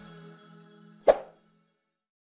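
Outro music fading out, then a single short pop sound effect about a second in, the loudest moment, to go with the animated subscribe button being clicked.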